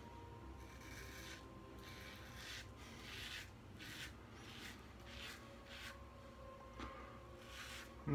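Double-edge safety razor (Razorock Quick Change with a Gillette Silver Blue blade) scraping through three or four days' stubble under lather. It makes a row of about ten short, faint rasping strokes, each under half a second.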